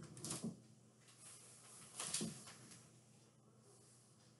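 Quiet handling noise of a person moving about with a small dog in their arms, with one brief soft knock or rustle about two seconds in.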